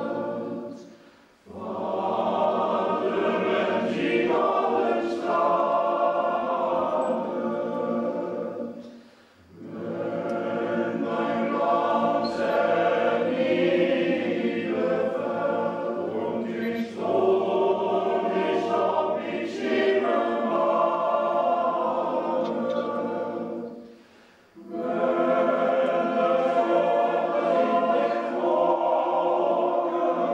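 Men's choir singing in long sustained phrases, with three short breaks for breath between phrases.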